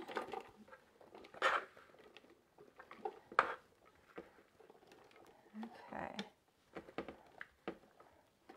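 A utensil scooping a chunky veggie burger mixture out of a bowl into a food processor: scattered scrapes and knocks, the sharpest about three and a half seconds in.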